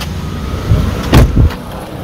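Car running with a steady low rumble, heavier thuds in the middle and one sharp knock a little past a second in.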